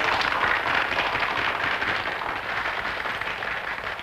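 Audience applauding, the clapping slowly dying down.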